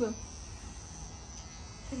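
Electric hair clippers buzzing steadily as a man's head is shaved close before a hair transplant.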